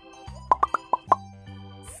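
Five quick pitched plop sound effects, one after another in about two-thirds of a second, each a short upward pop, over soft background music.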